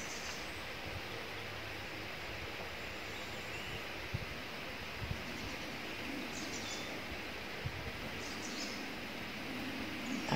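Quiet forest ambience: a steady background hiss with a few faint bird chirps and a handful of soft clicks.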